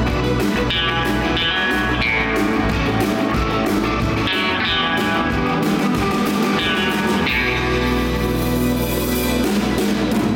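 Live rock band playing: two electric guitars, electric bass and drum kit. A held low bass note comes in about seven seconds in.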